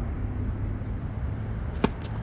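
A tennis serve: one sharp crack of the racket strings striking the ball near the end, over a steady low rumble.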